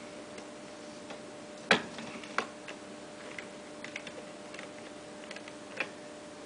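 Irregular light metallic clicks and knocks from a hand tool working on a wheelbarrow's handle fittings, with sharper knocks a little under two seconds in and near the end.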